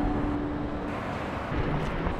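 Car engines and road traffic at a motorway toll booth: a steady low rumble, with a faint steady hum that stops about a second in.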